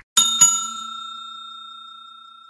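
Bell sound effect struck twice in quick succession, a bright ring that fades away slowly, marking the notification bell being switched on. A short click right at the start.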